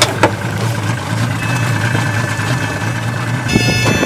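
Yamaha outboard motors idling with a steady low hum. There are two sharp clicks at the start, and steady high-pitched tones come in partway through, growing thicker near the end.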